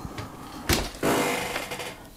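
A sheet of cotton watercolor paper being handled and slid across a board: a sharp tap about two-thirds of a second in, then a scraping slide lasting about a second.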